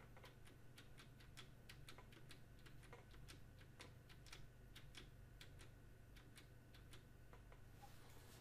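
Faint, irregular clicking of computer keyboard keys, about two to three presses a second, over a low steady hum: keys tapped in quick succession to step through a list of charts.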